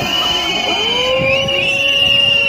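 Protest crowd reacting with whistles and horns: several long, held tones overlapping, one of them trilling, over crowd noise.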